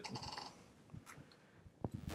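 A quiet pause in a talk: faint room tone with a soft, brief noise in the first half second and a single small click near the end.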